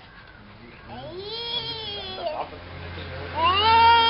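Two long, drawn-out high-pitched wailing calls, each arching up and falling off over about a second; the second, near the end, is louder.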